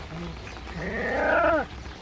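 A young Shiba puppy's whining cry: one call of about a second that rises then falls in pitch and breaks off abruptly.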